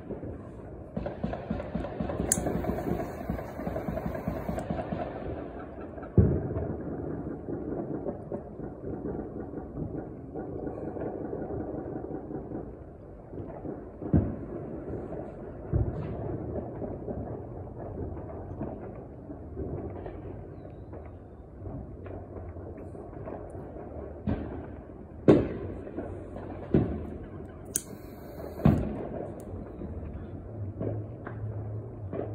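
Neighbourhood New Year's Eve bangs. A long, rapid crackling run of pops lasts about eleven seconds, then single loud bangs come every second or two, several of them close together near the end.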